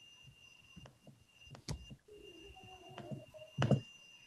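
Quiet background of an open video-call audio line: a faint steady high-pitched tone with scattered small clicks, and one brief louder noise near the end.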